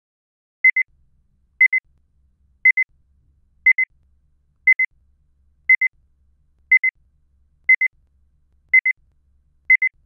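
Electronic timer beeping in short double beeps, one high pair about every second and evenly spaced, counting off the answering time after a question.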